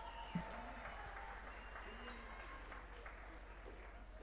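Faint murmur of audience voices in a quiet hall over a steady electrical hum, with one brief knock shortly after the start.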